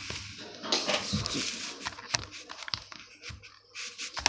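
Handling noise from the recording camera being picked up and moved: rustling with a string of light knocks and clicks.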